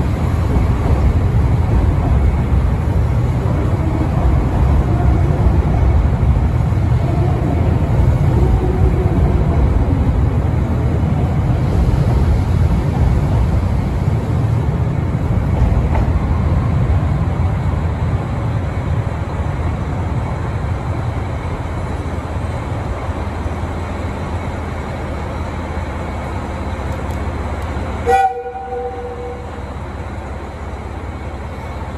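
Electric commuter train pulling out past the platform: a steady low rumble of wheels and running gear that slowly fades as it leaves. About two seconds before the end, a train horn gives one short toot.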